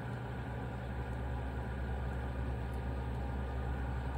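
Steady low background hum with a faint even hiss and no distinct events.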